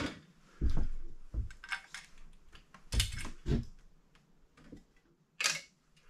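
Gumball machine parts being handled and set down on a wooden-framed drying rack: a run of light knocks and clatters, with a short sharper clack near the end.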